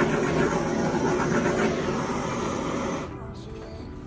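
Small handheld torch flame hissing steadily as it is passed over freshly poured epoxy resin to pop surface bubbles, cutting off about three seconds in. Faint background music underneath.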